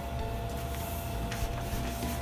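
Rustling of a cotton yukata and a cloth waist cord rubbing and sliding as the cord is handled and drawn out to both sides at the waist, with a brief louder swish about one and a half seconds in.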